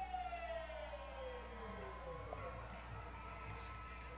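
A quiet falling sweep, a pitched tone with overtones gliding steadily down over about two seconds over faint held tones, typical of a broadcast transition sound effect.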